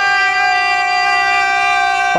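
A man's voice holding one long, steady chanted note during majlis recitation.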